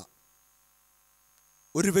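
A man's speech through a handheld microphone breaks off, leaving near silence with a faint steady electrical hum. His voice resumes near the end.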